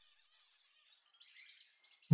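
Near silence, with a few faint bird chirps in the background.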